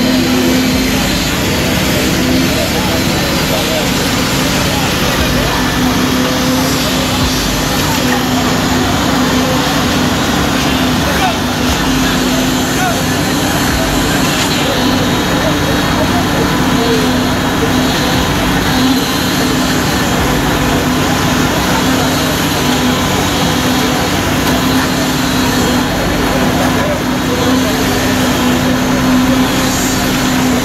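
Heavy construction machinery's diesel engine running steadily with a constant drone, under the chatter of many voices.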